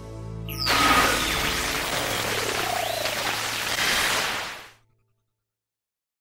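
A radio hissing with loud static and a few faint wavering tones after a short swish, then cutting off abruptly just before five seconds in as the radio is unplugged.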